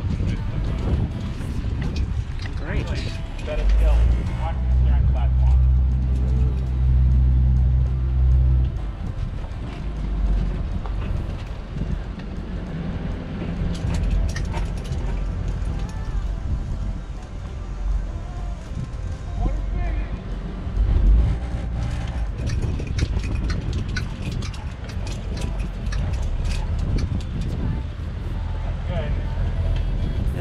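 Single-screw Grand Banks 36 trawler manoeuvring astern into a slip: its engine runs with a low drone that swells into a louder, steady low hum for about five seconds a few seconds in, and again briefly about two-thirds of the way through.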